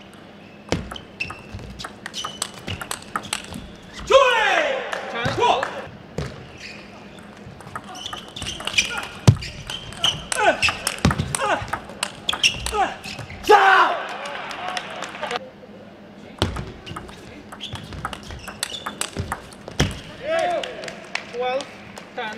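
Table tennis rallies: the celluloid ball clicks off paddles and the table in quick, irregular strokes. Players give loud shouts between points, around a third of the way in, in the middle and near the end.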